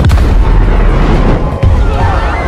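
Film sound effects of a volcano erupting: a loud boom at the start, then deep, continuous rumbling, with a second thud about one and a half seconds in.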